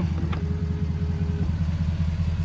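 Ford 6.7-liter Power Stroke V8 turbodiesel idling steadily. A faint motor whine is heard for about a second near the start as the power-folding side mirror moves.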